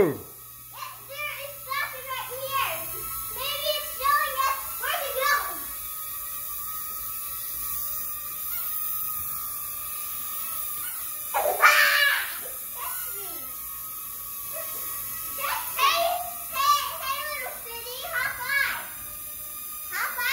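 Children squealing and shouting with short excited cries, the loudest about twelve seconds in, over a steady high whine from a small toy UFO drone's propellers as it flies.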